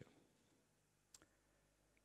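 Near silence: room tone, with one faint, short click a little over a second in.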